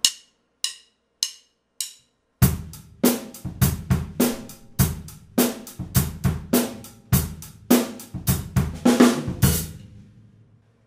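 Four clicks of drumsticks counting in, then a drum kit groove: hi-hat eighth notes played with the up-down wrist motion, the down stroke on each beat accented on the hi-hat's edge with the stick's shoulder and the up stroke on the offbeat lighter with the tip, over bass drum and snare. The groove stops just before the end.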